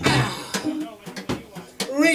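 The band stops playing, leaving people's voices and a few scattered sharp hits in a small room.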